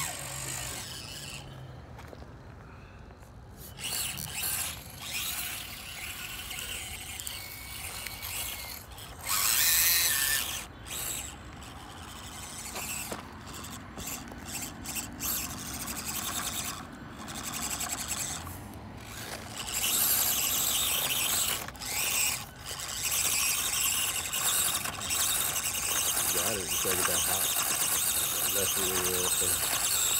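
Electric drive motors and gears of 1/24-scale Axial SCX24 RC crawlers whining as they climb a steep dirt hill. The whine comes and goes with bursts of throttle, then runs steadier and louder for the last third.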